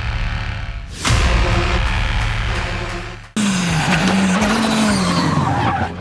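Music with a sweeping hit about a second in. After a sudden cut about three seconds in comes a rally car's engine at high revs, its pitch rising and falling as it drives past.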